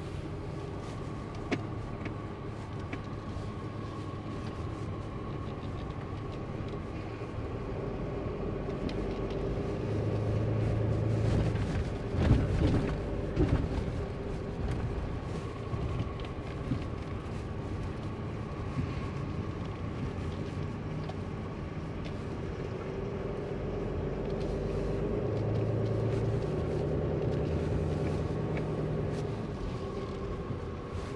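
Inside a pickup truck's cab while it is driven slowly with a fifth-wheel camper in tow: the engine runs steadily over road noise, swelling louder twice, most briefly and strongly about twelve seconds in.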